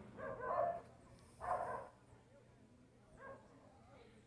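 A dog barking in the distance: a few faint barks with pauses between them.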